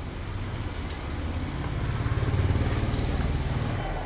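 A passing motor vehicle: a low engine drone that grows louder to a peak about halfway through and then fades.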